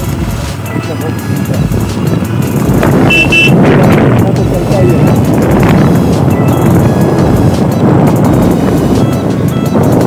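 Motorcycle riding, heard from the rider's own camera: engine running under loud wind rush on the microphone, which grows louder about three seconds in. Background music plays underneath.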